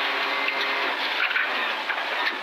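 Inside the cabin of a Toyota GR Yaris rally car at speed on gravel: its turbocharged three-cylinder engine holds a steady note under a dense rush of tyre, gravel and road noise.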